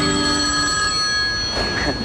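A telephone ringing: one steady, high ring that starts at once and stops after about two seconds. A man's laugh fades out under the start of it.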